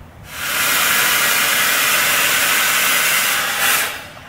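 Viper NT smoke machine firing a burst of fog: a loud, steady hiss that swells in just after the start, holds for about three seconds and cuts off sharply just before the end.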